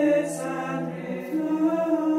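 A choir singing slow, held chords of a lullaby, with a sung 's' consonant near the start.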